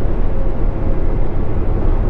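Tractor-trailer's engine and tyres cruising at highway speed, a steady low rumble heard from inside the cab.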